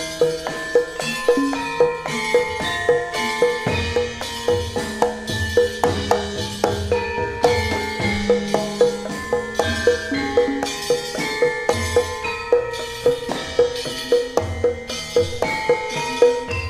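Javanese gamelan music: bronze metallophones and kettle-gongs ringing out short notes in a quick, steady pulse, with kendang hand-drum strokes underneath.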